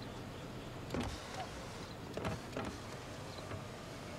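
Limousine power window running as its tinted glass rises until it shuts, with a few short knocks along the way, about a second in and again twice just after two seconds.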